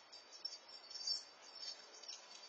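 A rapid run of high-pitched chirps, loudest a little past the middle, over faint outdoor background noise.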